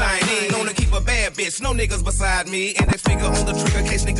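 Hip hop track with rapped vocals over a deep, pulsing bass beat.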